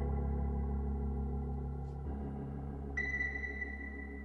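Held keyboard chords over a deep bass note, changing to a new chord about two seconds in; a thin, steady high synth tone comes in about three seconds in.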